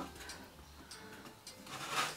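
Faint handling sounds of a plastic paint cup being set upside down on a stretched canvas: light ticks and taps, with a brief rustle near the end.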